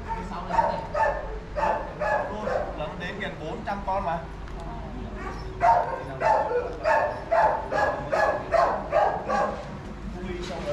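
A dog barking over and over, about two to three barks a second, in one run at the start and a second, louder run after a short pause.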